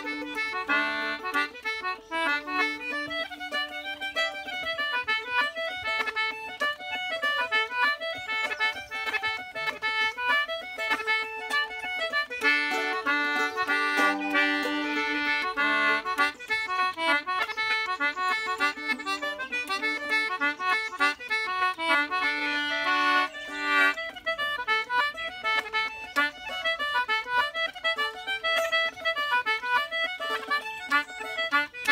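Concertina playing an Irish tune in four-four time, a steady run of quick melody notes over held chords.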